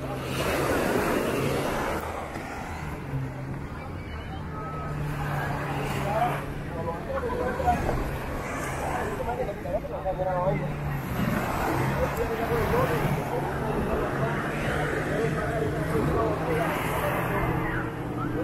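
Beach crowd chatter over the steady low hum of motorboat outboard engines idling near the shore.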